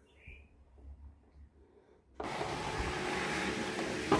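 Cricut Explore 3 cutting machine's motor-driven rollers running steadily, feeding the cutting mat forward out of the front of the machine to unload it. The motor starts suddenly about halfway through.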